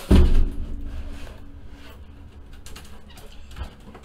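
Cardboard shipping case being handled: a loud thump and scrape of cardboard at the start, then quieter rubbing of cardboard, and a soft knock near the end.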